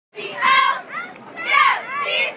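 Young cheerleaders' high-pitched voices shouting, in two loud calls about a second apart.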